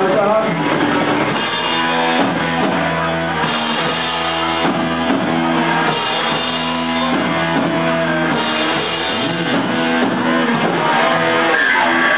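Live rock band playing an instrumental passage: distorted electric guitars and bass guitar over a drum kit, loud and steady.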